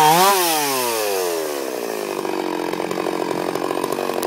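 Two-stroke chainsaw, revved once more then released, its engine winding down over a second or so and settling to a pulsing idle.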